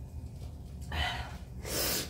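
A woman's breathing while drinking: a short sharp breath about a second in, then a louder, long breathy exhale near the end.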